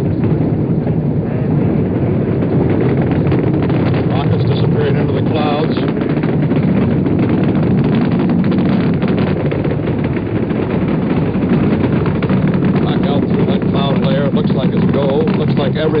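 Saturn V rocket's first-stage engines (five F-1s) firing during the climb after liftoff: a loud, continuous deep rumble shot through with ragged crackle, the sound pressure strong enough to buffet the microphone and shake the cameras.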